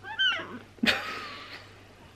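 A toddler making two short, high-pitched whiny cries: a wavering one at the start and a breathier one about a second in.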